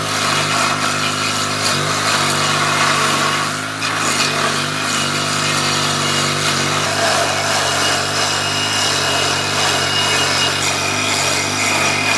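Stump grinder running steadily under load, its engine droning while the spinning toothed cutter wheel grinds into a tree stump.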